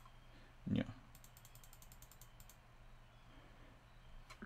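Fast, faint, even ticking of a computer mouse scroll wheel, about ten ticks a second for just over a second, starting about a second in.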